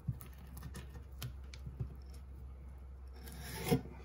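Chef's knife slicing lengthwise through a dried sausage stick on a wooden cutting board, with a few light clicks of the blade on the board. A louder rub on the board near the end as the split pieces are moved.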